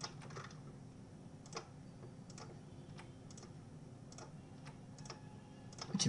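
Faint, irregular clicking of a computer mouse and keys, about a dozen sharp clicks spread unevenly, over a low steady hum.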